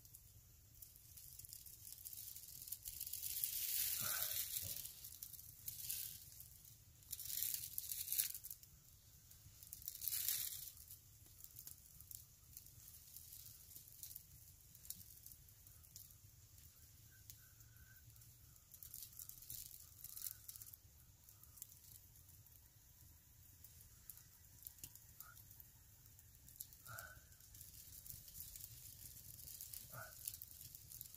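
Dry fallen leaves rustling and crunching as a person kneels and works by hand on a stick-frame camp chair, with several louder scratchy bursts in the first ten seconds, then fainter rustles.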